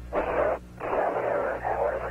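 Hiss-filled radio voice channel on the 1969 recovery communications loop, keying open about a fifth of a second in. It cuts out briefly around the half-second mark, then carries on with narrow, telephone-like band-limited noise and no clear words.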